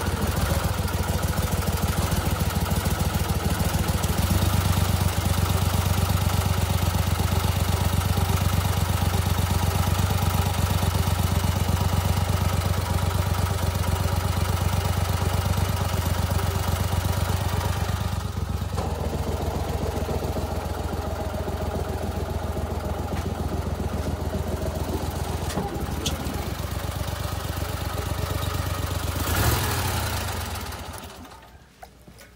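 Mud Buddy HDR 40 EFI fuel-injected surface-drive mud motor running steadily under way. The throttle eases off a little about two-thirds of the way through.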